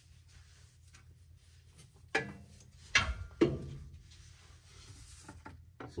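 A few brief knocks and rattles as hands and a tool work against a metal transmission pan, the loudest about three seconds in, over quiet room tone.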